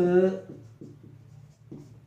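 Marker pen writing on a whiteboard: a quick run of about six short strokes.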